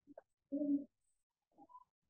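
Faint short cooing call of a pigeon about half a second in, with a few fainter sounds around it.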